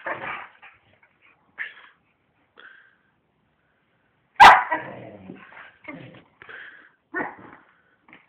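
Dog barking in play: a few short barks, a loud sharp bark about four and a half seconds in, then a quick run of barks near the end.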